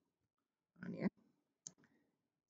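A few spoken words, then a single short, sharp click about one and a half seconds in, as the lecture slide is changed.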